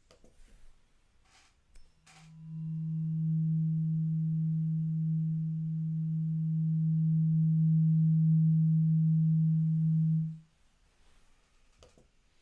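Tuning fork marked 128 Hz ringing as a steady pure tone for about eight seconds, sounding a little above its marked pitch, with a faint second tone about an octave higher. It starts after a light knock or two and stops fairly suddenly.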